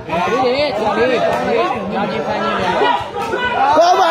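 Several voices talking over one another: spectators' chatter around the court.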